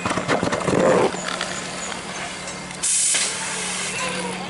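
Fire hose nozzle opened about three seconds in: a sudden loud hiss of water spray that carries on steadily, over a steady low hum. In the first second there is a clatter of knocks.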